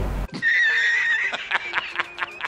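A man laughing hard, cut in abruptly: a high, wavering squeal for nearly a second, then a run of short choppy bursts of laughter.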